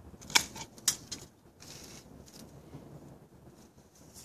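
Hand pruning shears snipping thorns off a citrus tree: two sharp cuts about half a second apart near the start, a smaller click just after, then faint rustling of leaves and branches.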